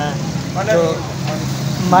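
Short fragments of a man's speech over a steady low hum.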